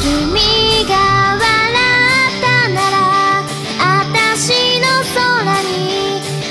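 J-pop anime character song: a high, girlish female voice singing Japanese lyrics over a pop band backing with bass and drums.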